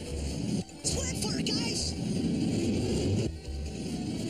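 Cartoon sound effects of a torpedo launching and rushing through the water, with a dense rumble and a brief hiss about a second in, over an action music score.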